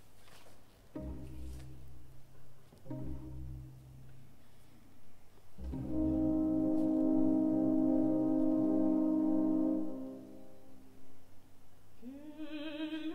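Opera orchestra playing soft chords with brass to the fore: two short chords in the first few seconds, then a longer, louder held chord from about six to ten seconds in.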